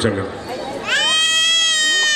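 A high-pitched wailing cry begins about a second in. It rises quickly, then holds a long, slightly falling pitch and is still going at the end.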